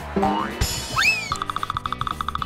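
Editing sound effects over background music: a cartoon boing-like rising glide, then a hissy swoosh with a pitch that rises and falls about a second in. Just past the middle a fast, even pulsing beep pattern starts up as the outro jingle.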